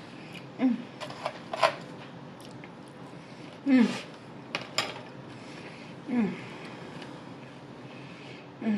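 Close-up mouth sounds of a person eating sushi: wet chewing clicks and smacks, broken three times by a short falling 'mm' hum of enjoyment.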